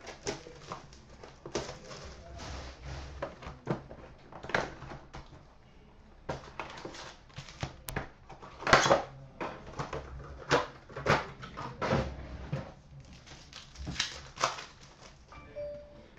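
Hands opening a cardboard box of trading cards and pulling out its packs: irregular rustling, scraping and sharp taps of cardboard and pack wrappers, with a few louder cracks near the middle and toward the end.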